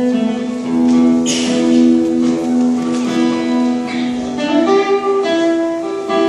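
Live acoustic guitar playing an instrumental melody, picked notes ringing over one another with an occasional strum.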